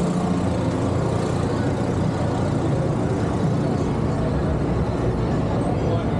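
Busy city street ambience: steady traffic noise from cars, buses and trucks, with a low steady hum that fades away about a second in.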